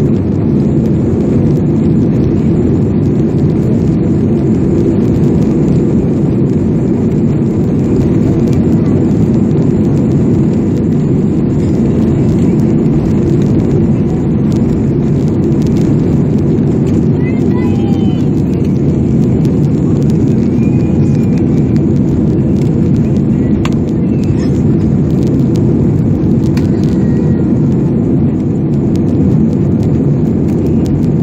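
Jet airliner's engines at takeoff thrust, heard from inside the passenger cabin as a loud, steady, deep noise during the takeoff roll and liftoff.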